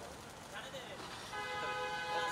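A vehicle horn sounds one long, steady honk starting over halfway through, over faint street voices.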